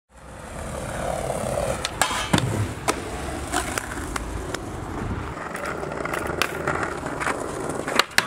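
Skateboard wheels rolling over brick paving: a steady rumble broken by scattered sharp clicks and knocks. Near the end comes a louder sharp clack as the board strikes a ledge.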